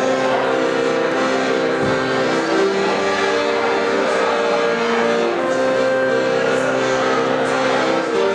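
Piano accordion playing an instrumental passage of held chords that change every second or so.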